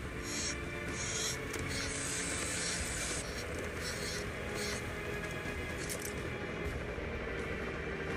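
Film soundtrack music from an action-movie clip, with short bursts of hissing in the first few seconds.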